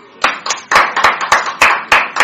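A few people clapping their hands in welcome, quick uneven claps beginning just after the start.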